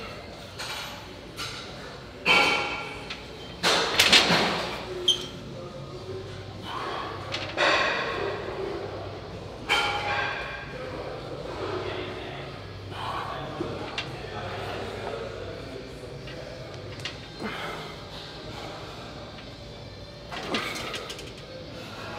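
A man breathing hard and grunting through pec deck reps, with knocks from the machine's weight stack. The loudest strains come in a cluster a couple of seconds in and again near the middle.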